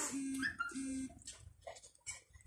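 Two short hummed notes on the same low pitch, "mm, mm", just after a brief breathy rush of noise.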